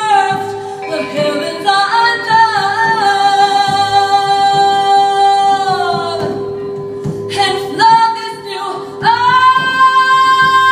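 A woman singing live with long held notes that bend and slide, gliding up into a high sustained note near the end, over a steady drone tone and soft frame-drum strokes.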